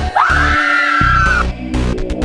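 A high scream that rises sharply and is then held for over a second, over electronic music with a pulsing bass beat.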